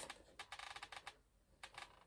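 Faint, quick light clicks and crackles of a Funko Pop box's cardboard and plastic window being handled, a run of them about half a second in and a few more near the end.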